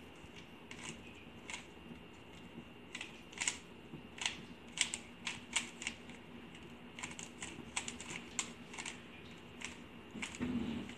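Plastic 3x3 Rubik's cube being turned by hand, its layers clicking as they snap round. The sharp clicks come irregularly, one to three a second, and crowd closer together in the second half as the same two turns are repeated over and over.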